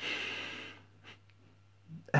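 A man's breathy sigh, one long exhale lasting under a second and fading out, followed by quiet with a couple of faint ticks.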